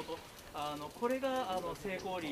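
A man's voice calling out in two short phrases.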